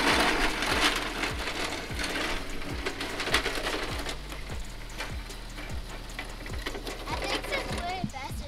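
Razor Crazy Cart electric drift cart, overvolted to 36 volts, running across pavement: motor and small hard wheels, fading a little as it moves away. Background music with a steady beat of about two thumps a second plays under it.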